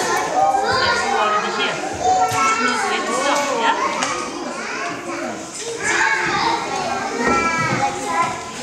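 Many children talking and calling out at once: a continuous chatter of overlapping young voices, with no single voice clear enough to follow.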